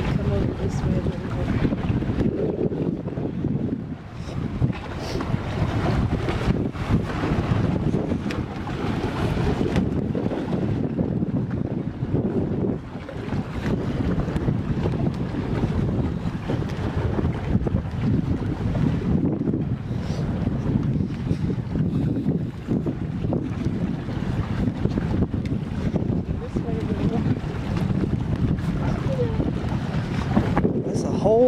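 Wind buffeting the microphone in a low, uneven rumble, with brief lulls about four and thirteen seconds in.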